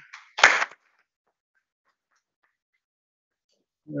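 A short burst of noise over a video-call microphone about half a second in, followed by silence; a man's voice starts right at the end.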